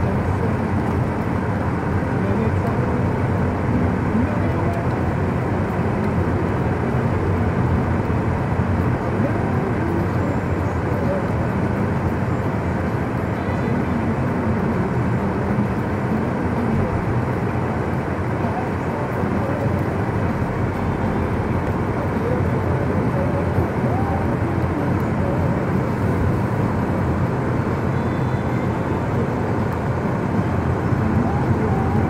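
Steady road and engine noise heard from inside a car's cabin as it drives along a snow-covered street.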